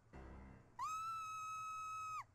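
Cartoon soundtrack: a short, quieter pitched sound, then a steady high whistle-like note held on one pitch.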